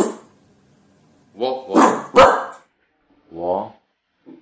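Jack Russell-type terrier barking: short, sharp barks, the loudest two close together about two seconds in, and another near the end.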